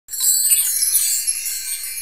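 A bright, sparkling chime shimmer from a logo intro sound effect. It starts at once, loudest in the first second, then slowly fades.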